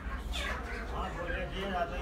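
A cat meowing, with people talking.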